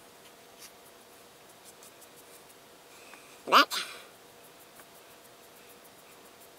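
Foam brush stroking wood stain onto a pine reindeer figure, with faint scratchy strokes. About three and a half seconds in, a single short, loud sound rises sharply in pitch.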